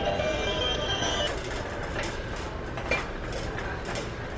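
A melody playing from a red novelty rotary-telephone Christmas decoration, over a low, steady rolling rumble.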